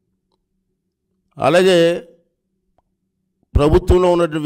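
A man speaking into a microphone: one short word about a second and a half in, a pause, then speech starts again near the end.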